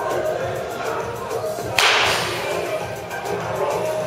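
A baseball bat striking a ball once, a sharp crack about two seconds in, over background music.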